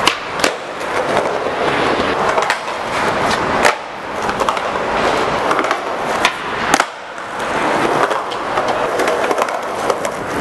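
Skateboard wheels rolling on rough concrete, broken by several sharp clacks of the board popping and landing, the loudest about half a second in, near four seconds and near seven seconds.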